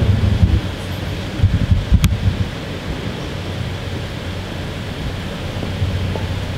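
Steady low hum of a large hall, with a few low thumps in the first two seconds and one sharp click at about two seconds, typical of handling noise on a handheld camera's microphone.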